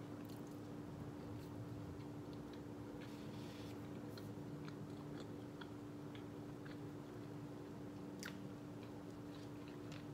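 Quiet close-up chewing of a soft black bean and potato taco, with scattered small wet mouth clicks and one sharper click about eight seconds in, over a steady low hum.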